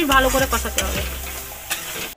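Metal spatula stirring and scraping thick masala around a kadai while the oil sizzles underneath, with a knock against the pan near the end. The masala is being fried until the oil separates from it.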